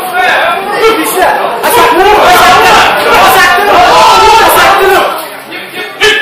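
Several voices of spectators and corners shouting encouragement to a fighter over one another. The shouting is loudest in the middle and dies down near the end.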